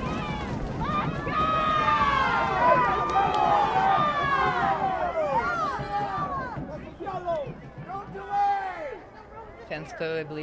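Many voices shouting and calling out at once, overlapping high-pitched yells from around a soccer field. They are loudest in the first half and thin out to a few scattered calls after about seven seconds.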